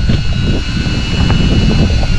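Boat's outboard engines running steadily, a low drone with a thin whine on top, and wind on the microphone.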